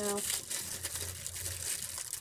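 Plastic packaging crinkling and rustling as it is handled and pulled open.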